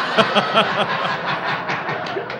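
Studio audience laughing hard after a punchline, with a man's laughter in quick bursts over it.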